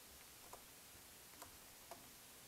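Near silence broken by three faint, short computer mouse clicks, spread across about two seconds.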